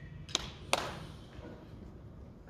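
The tail of a drum hit dies away into a hushed hall, then two sharp clicks less than half a second apart under a second in.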